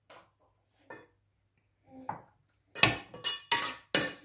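Spoon and small ceramic bowl tapping faintly as green olives are tipped into a saucepan. In the second half come about four sharp clanks of a spoon against the metal saucepan as the pasta is stirred; these are the loudest sounds.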